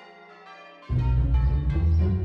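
Church bells' tones hang and fade away. About a second in, loud, deep music comes in suddenly and becomes the loudest sound.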